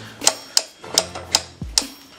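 Weight-selector dial of an adjustable dumbbell being turned, clicking about five times as the weight is set higher, with a dull thump near the end.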